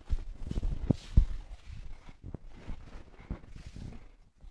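Bare feet stepping and stamping on judo mats during grip fighting, with the rustle of gi cloth: a quick, irregular run of soft thumps, the two loudest about a second in.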